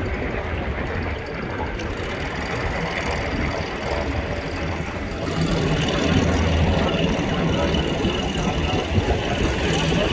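An engine running steadily, a low rumble that swells a little about halfway through, with faint voices in the background.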